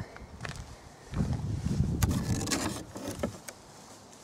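Broken shale slabs shifting in a plastic bucket as they are rummaged through, with rough scraping and a few sharp clicks of stone on stone.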